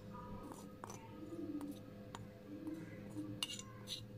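Metal spoon scraping and clinking against a frying pan and a steel pot as cooked black chickpeas are tipped out, giving a few faint separate clinks, the loudest near the end.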